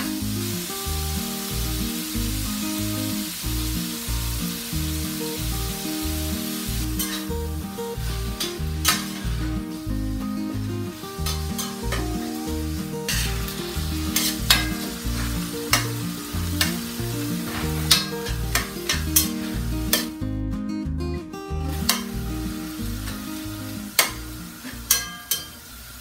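Ground turkey sizzling as it fries in lard in a cast-iron skillet, while a metal spatula stirs and scrapes it with frequent sharp taps against the pan. Background music with stepped low notes plays underneath, and the sound cuts out briefly about three-quarters of the way through.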